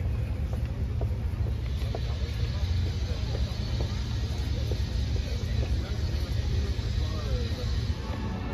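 Outdoor ambience: a steady low rumble with faint, scattered voices of people around.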